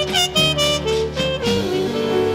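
Small-group jazz from a vinyl LP: a horn plays a quick run of short notes over a walking bass, then settles into longer held notes near the end.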